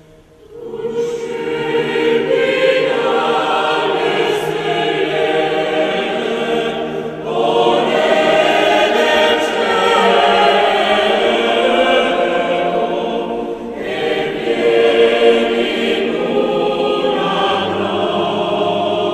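Choral music: a choir singing long, held phrases that start about half a second in, with short breaths between phrases twice.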